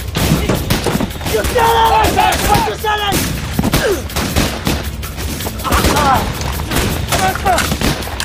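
Rapid rifle fire in a firefight, many shots in quick succession throughout, with voices shouting over it a couple of times.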